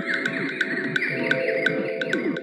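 Techno music: a wavering, gliding high synth line over steady hi-hat ticks about four a second.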